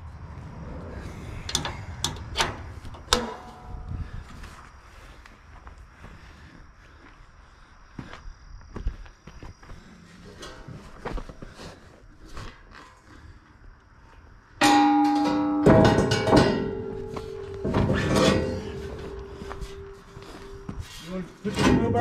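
Metal clinks and knocks from hand tools on a trailer, then, from about fifteen seconds in, loud scraping and clanking of a steel frame moved over concrete, with a ringing metallic squeal.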